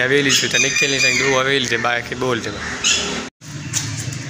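A man talking, with a chicken squawking in the background during the first second; the sound drops out completely for a moment about three seconds in.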